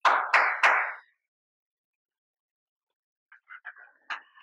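Three quick hand claps, about a third of a second apart, followed near the end by the soft crackle of a stiff picture-book page being turned.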